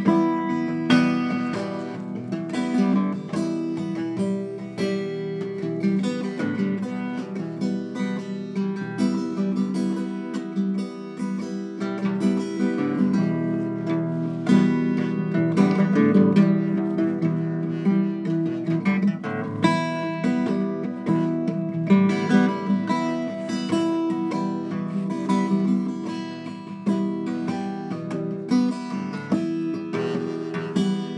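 Solo guitar playing a piece, with notes and chords ringing out one after another.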